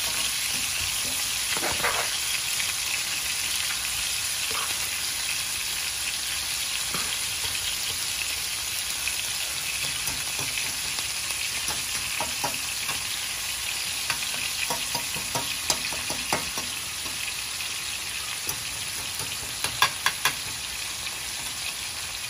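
Steaks and diced onions sizzling steadily in a hot frying pan, with a fork and spoon scraping and clicking against the pan as the onions are stirred around the meat. There is a quick run of sharp taps a little before the end.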